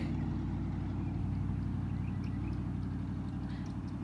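Steady low hum of a running engine or motor, unchanging throughout.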